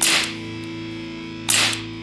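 Two shots from a Umarex Legends C96 CO2 BB pistol, a sharp crack at the start and another about a second and a half later, each with the snap of its blowback action. Background guitar music plays underneath.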